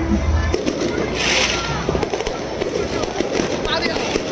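Firecrackers going off in scattered sharp cracks, with a short hissing burst about a second in and crowd voices underneath.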